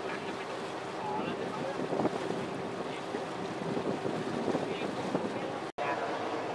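Motorboat under way on a river: a steady engine drone with water rushing along the hull and wind on the microphone. The sound drops out briefly near the end.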